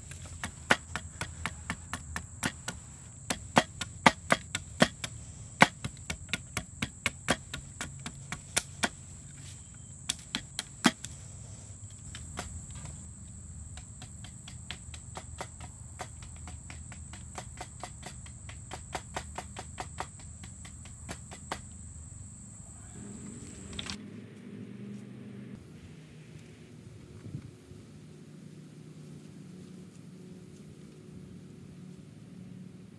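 Cleaver blade chopping a stick to a point against a driftwood log: a run of sharp knocks, two or three a second, that stops about three-quarters of the way through, over a steady high insect drone. After that only quieter outdoor background remains.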